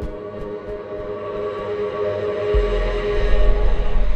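Background music: sustained ambient drone chords building steadily in loudness, with a deep bass note coming in about two and a half seconds in.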